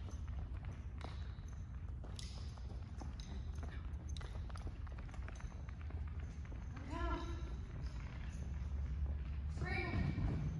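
A handler's short voice calls to a dog running an agility course, one about two-thirds of the way through and another near the end, over running footfalls and a steady low hum in a large hall.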